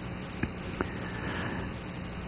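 A man breathing in through the nose close to a microphone, a short sniff between sentences, with two light clicks over a steady background hum.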